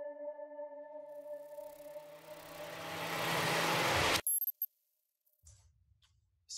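Intro music: held ambient tones fade away while a rising whoosh swells for about three seconds and cuts off suddenly, followed by a brief glitchy blip and a moment of silence.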